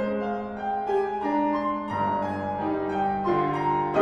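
Grand piano played four hands: a melody of sustained single notes in the middle register over held bass notes, the bass moving to a lower note about halfway through.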